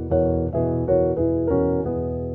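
Piano playing gospel-jazz chords with the sustain pedal down: several quick chord strikes in the upper register over a held low E bass. This five-over-four tension chord (F# over E, a B major 9 sus4 voicing) resolves to an E chord near the end.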